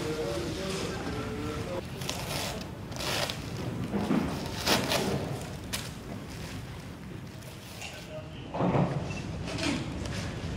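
Tissue paper and plastic wrapping rustling in several short swishes as artworks are unwrapped by hand, over a steady low room hum.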